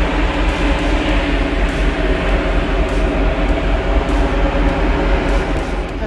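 Wind buffeting the microphone on an open ship deck: a loud, steady rumble with a rushing hiss that holds without a break.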